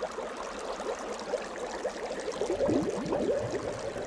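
Bubbling water sound effect: a quick, dense run of small bubbles blooping, each a short gliding pop. It grows busier and louder about two and a half seconds in.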